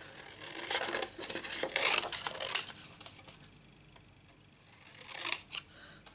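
Scissors cutting through white cardstock: a quick run of snips over the first two and a half seconds, then quieter, with one more short burst near the end.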